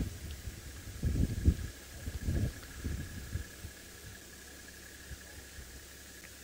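Wind buffeting the microphone in a few low rumbling gusts, the strongest about a second and a half in, settling to a faint steady hiss.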